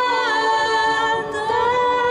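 A woman singing solo into a microphone. She holds a long note with vibrato that slides down early on, breaks briefly just past the middle, then climbs back up to another held note.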